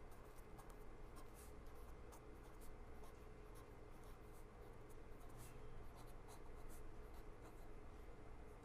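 Felt-tip pen writing on paper: faint, irregular scratchy strokes as the words are written out.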